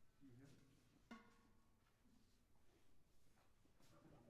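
Near silence: faint murmuring, with a single struck pitched note that rings briefly about a second in.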